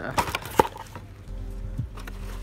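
A cardboard box and the bubble-wrapped ring-light stand inside it being handled: a few sharp clicks and knocks in the first second, the loudest just past half a second in. From about a second and a half in, a steady low hum with a few held tones sets in.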